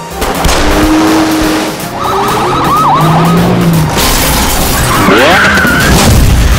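Loud trailer music mixed with car-chase sound effects: engines and skidding tyres, with wailing pitch glides about two seconds in and again near the end.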